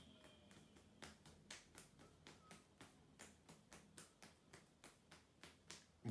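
Faint quick ticks, about four a second, from hands being opened wide and closed again rapidly in a hand-opening exercise, against near silence.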